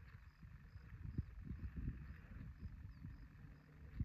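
Faint outdoor ambience in open country: low, irregular rustling and soft thumps, with a faint high chirp repeating about twice a second.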